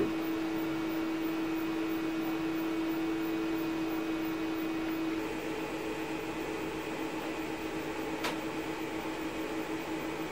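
Plasma tube driven by two slightly detuned square waves, giving off a steady electrical hum with a strong single tone. About five seconds in, the tone drops away and a rapidly pulsing buzz takes over as the beating frequencies make the plasma pulse. A single sharp click comes near the end.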